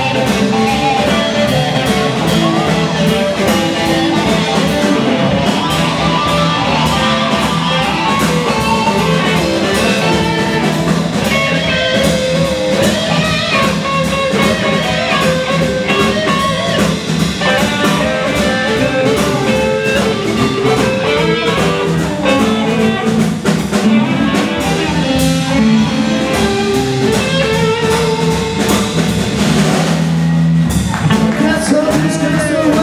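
Live blues band playing an instrumental passage: electric guitars over a drum kit and bass guitar, with no vocals.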